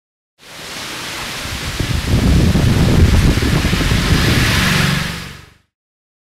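A steady rushing noise with no tune or rhythm. It swells in from silence about half a second in, grows louder over the next couple of seconds, then fades out near the end.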